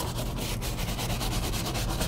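Stiff hard-plastic-bristled detailing brush scrubbing quickly back and forth against the plastic fender liner of a car's wheel well, a rapid run of short scratchy strokes, working wheel-cleaner gel into baked-on burnt rubber.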